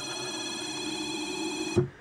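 Dyadic SCN6 electric linear actuator's motor whining steadily as it drives the rod back in, then stopping with a click near the end.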